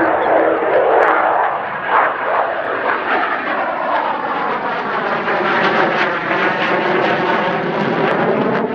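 Mitsubishi F-2 fighter's single F110 turbofan engine at go-around power as the jet passes close by on a low approach, gear retracting, and climbs away. It is a loud, steady jet rush whose tone sweeps and wavers as the aircraft goes past.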